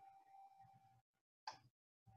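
Near silence: faint room tone with a thin steady hum that cuts out about halfway through, then one brief soft sound near the end.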